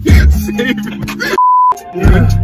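Hip-hop beat with deep bass playing, cut about one and a half seconds in by a short, steady 1 kHz censor bleep that replaces all other sound for about a third of a second before the beat comes back.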